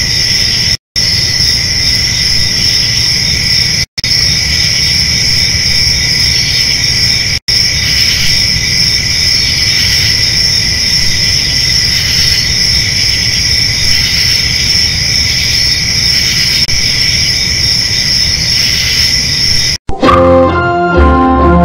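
Crickets chirping in a dense, steady chorus, used as the classic 'crickets' gag for silence with no reply. It drops out for a moment a few times.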